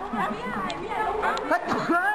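Only speech: people chatting, several voices overlapping.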